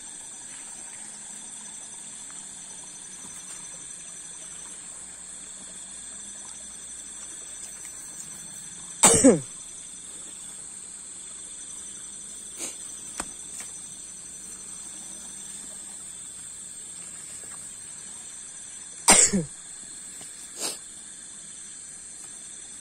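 A man coughing twice, about ten seconds apart, over a steady high-pitched drone of night insects.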